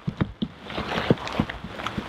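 Close handling noise: irregular light ticks and a soft rustle that swells in the middle, as gloved hands and a wet jacket move around the pistol.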